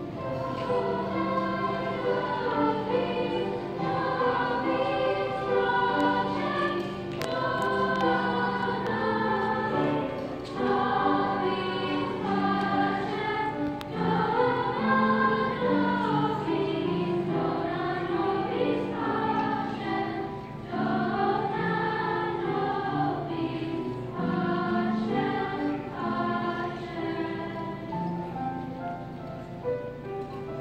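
Sixth-grade girls' choir singing a song together.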